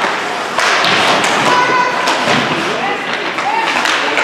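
Ice hockey play in a rink: a few sharp clacks and thuds of sticks and puck, over indistinct spectator voices and calls.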